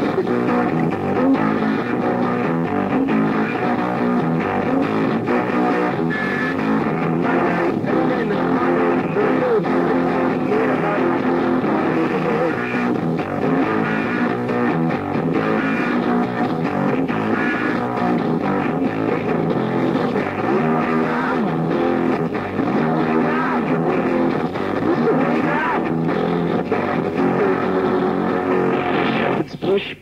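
Lo-fi punk rock demo from a bootleg tape: a guitar-led band playing steadily without a break, the sound dull with little top end.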